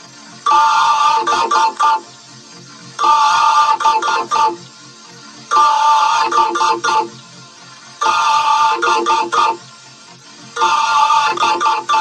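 A short ringtone-like musical phrase repeating five times, about once every two and a half seconds, with a gap of about a second between repeats.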